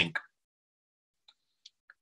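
A man's voice trailing off on the last word in the first moment, then near silence broken only by a few faint ticks.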